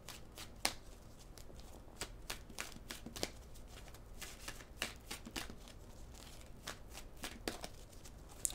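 A deck of tarot cards being shuffled by hand: soft, irregular clicks and slaps of cards sliding against one another, several a second.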